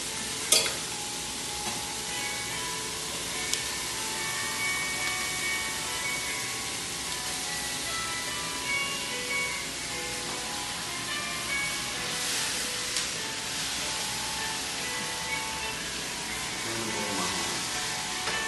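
Vegetables frying in a hot wok, a steady sizzle, under soft background music. A single sharp knock sounds about half a second in.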